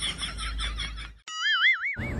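Background music with a quick repeating jingly figure stops about a second in. A cartoon 'boing' sound effect follows: a single wobbling tone that wavers up and down in pitch about four times a second.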